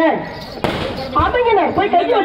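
A voice talking over a microphone and loudspeaker, with a short break soon after the start and a single sharp hit about a third of the way in.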